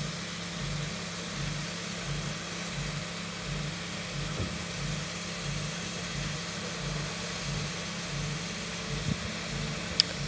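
An engine idling steadily, with a low hum that pulses evenly about twice a second.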